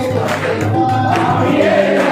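A group of voices singing a devotional song together, steady and unbroken.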